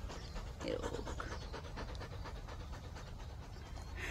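Belgian Malinois panting close to the microphone, a quick, steady rhythm of breaths.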